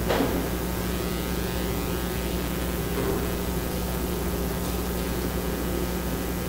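Steady room noise with a constant low electrical hum, broken by a short knock right at the start and a fainter one about three seconds in.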